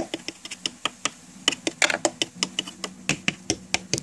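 Rapid, irregular small plastic clicks and taps, several a second: a toy doll's plastic base knocking against the floor and furniture of a plastic dollhouse as it is handled and moved along.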